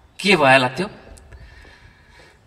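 A man's voice speaking into a microphone: one drawn-out word whose pitch falls, then a pause with only faint background sound.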